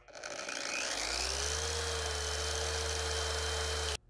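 Bauer long-throw dual-action polisher (7.5 A electric motor) starting with its soft start: the motor whine rises gradually over about a second and a half instead of jumping to full speed, then runs steady at the set speed. It cuts off suddenly just before the end.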